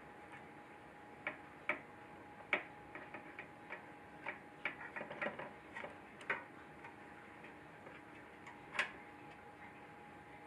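Irregular sharp metallic clicks and ticks as a hand tool works at a screw inside a metal electronics case, the clicks bunched in places and the loudest about nine seconds in, over a faint steady hum.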